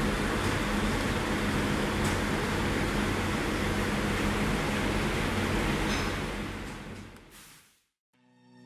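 Steady factory background noise: a low mechanical hum under an even rush, like running machinery or ventilation. It fades out over the last couple of seconds.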